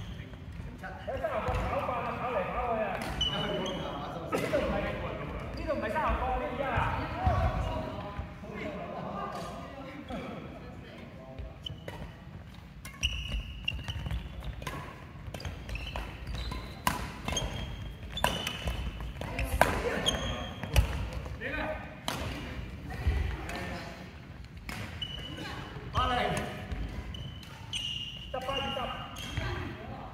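Badminton rally in a large hall: sharp, repeated racket strikes on the shuttlecock among footfalls and short shoe squeaks on the wooden court floor, echoing in the hall. Voices are heard in the background.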